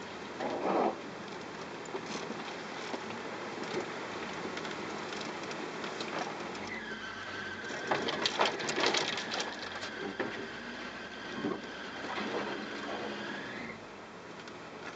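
Cabin noise of a 4x4 driving slowly on a rough sandy dirt track: a steady rumble with bursts of knocking, rattling and crackling, loudest a little past the middle. In the second half a thin, steady high tone runs for about seven seconds.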